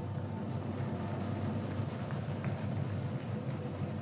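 Drum line playing a drum roll: a steady, rapid low rumble that holds the suspense before a recipient is announced.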